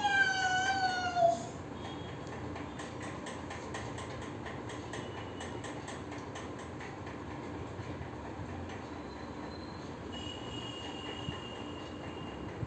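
A toddler's high-pitched squeal lasting about a second, falling slightly in pitch, right at the start. After it, only a steady low background hum.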